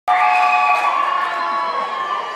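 Crowd cheering and screaming, with many long high-pitched held screams over general shouting, loud from the first instant and easing slightly.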